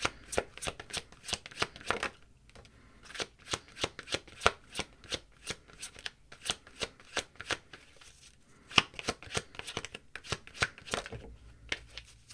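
A tarot deck being shuffled by hand: quick runs of card clicks and snaps, a few per second, in three bouts with brief pauses between them.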